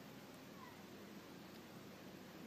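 Near silence: faint steady background noise with a low hum, and a couple of faint, short falling calls of a small animal in the first second.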